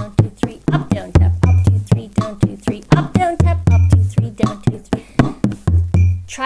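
Bodhrán played with a tipper in a steady 9/8 slip-jig pattern, a fast even run of strokes. A deep low note comes about once every two and a quarter seconds, once each bar.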